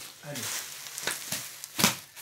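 Plastic-wrapped bundles of T-shirts being handled and shifted, the plastic packaging crinkling and rustling, with a louder sharp rustle near the end.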